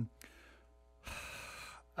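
A man's audible breath in close to a desk microphone: one short hissing inhale about a second in, lasting under a second, taken before he speaks again.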